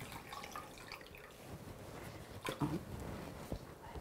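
Faint dripping and trickling of water running off a wet wool skein as it is lifted and squeezed out over a glass bowl of rinse water, with a few small clicks of handling.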